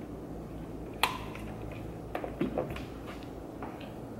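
Quiet handling of hairstyling tools and hair over a low room hum: one sharp click about a second in, then a few faint soft taps and rustles.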